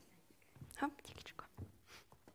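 A brief, faint whispered voice a little before the middle, with a few soft thuds around it in a quiet hall.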